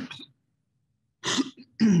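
A person coughing and clearing their throat in short, loud bursts: one trailing off at the start, then two more about a second and a half in and near the end.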